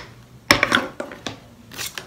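Clear plastic bag crinkling and rustling as it is handled with stencil sheets inside: a sharp crackle about half a second in, then softer rustles.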